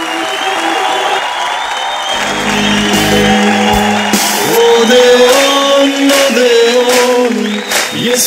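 Studio audience applauding over music. From about four seconds in, loud held singing comes in over the clapping.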